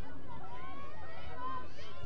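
Several women's voices calling and shouting to one another on the field during lacrosse play, overlapping and unclear.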